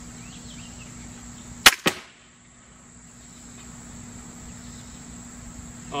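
TenPoint Viper S400 crossbow firing: a sharp crack of the released string and limbs about a second and a half in. About a fifth of a second later comes a second, smaller crack as the arrow strikes the foam deer target. Crickets chirp steadily behind.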